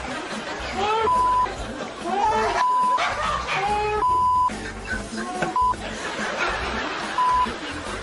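A man yelling in fright, his words cut by five short censor bleeps: a steady single tone, over background music.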